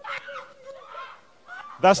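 A woman's wavering, wailing cries during a deliverance prayer, fainter than the preaching around them, broken off near the end by a man's loud shout.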